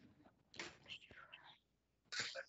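A faint, whispered or very quiet voice, briefly, about half a second in, otherwise near silence.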